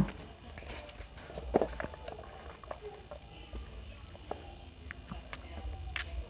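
Drinking through a straw from a large plastic cup: quiet sips and swallows with scattered small clicks.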